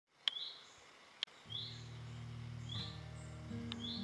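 A bird giving a short rising chirp about once a second, with a sharp click near some of the calls. About a second and a half in, music with sustained low notes comes in underneath.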